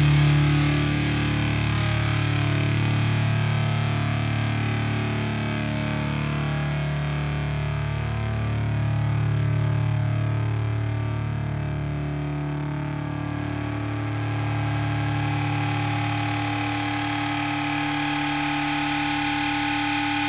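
Distorted electric guitar chords held and ringing with effects, swelling and fading slowly, with no drums: the sustained closing chords of a rock song.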